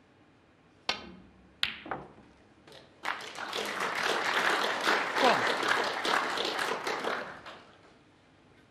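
Snooker cue tip striking the cue ball with a sharp click, and a second click under a second later as the cue ball strikes a red. Then audience applause for about four seconds, fading out.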